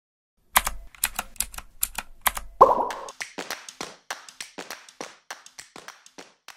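Logo-animation sound effect: a run of sharp, typing-like clicks, then a louder pop about two and a half seconds in, followed by a quicker run of clicks that fade away.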